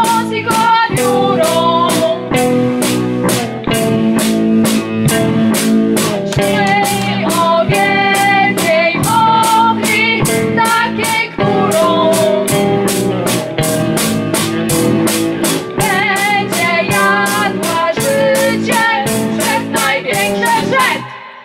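Live rock band: women singing over electric guitar and a drum kit keeping a steady beat.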